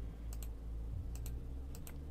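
Faint computer mouse clicks, about four in all, each a quick double tick, over a low steady hum.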